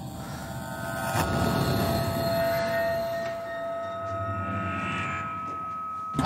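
Horror-film soundtrack drone: a low rumble under a few long held tones, swelling about a second in and holding.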